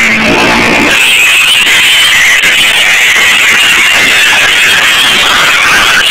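Dodge Colt's tyres squealing loud and steady through a burnout, the wheels spinning in place.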